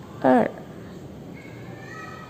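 A woman's voice gives one short syllable with a falling pitch, about a quarter second in, while counting the strokes of a Chinese character aloud.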